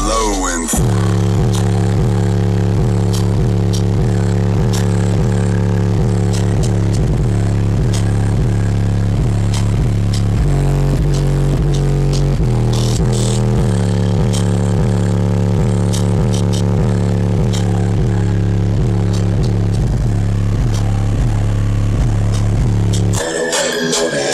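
Bass-heavy electronic music played loud through a car's two 18-inch subwoofers on an amplifier: deep bass notes beat about twice a second. The music starts about a second in and cuts off suddenly near the end.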